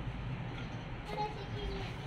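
Quiet outdoor background: a steady low rumble with faint hiss, and a faint short tonal call about a second in.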